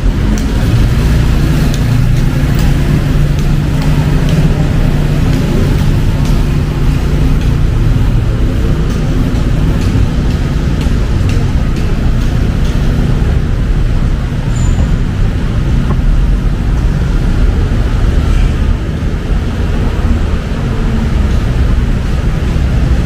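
Steady road traffic rumble from cars and other vehicles running along a busy street.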